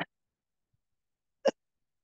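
Two brief, sudden vocal noises from a person close to the microphone, about a second and a half apart, the second louder, against otherwise dead silence.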